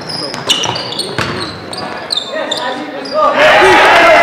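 Basketball sneakers squeaking on a hardwood gym floor and a ball bouncing during play. About three seconds in, loud shouting voices start up suddenly and carry on.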